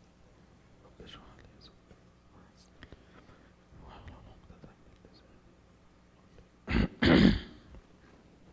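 Faint whispering in a quiet hall, then a loud, close throat-clearing into a headset microphone about seven seconds in.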